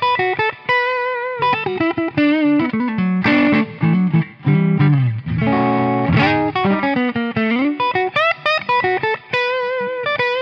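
Electric guitar playing a lead line: a Les Paul with P90 pickups through a Joyo Rated Boost clean-boost pedal, set with low gain and high volume, into a Fender Blues Deluxe tube amp. The tone is loud and lightly overdriven, in quick phrases of single notes and double-stops with string bends, vibrato and a few held notes.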